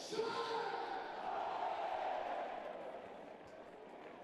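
Football stadium crowd noise: a broad hum of many fans' voices, with a brief louder shout just after the start, dying away toward the end.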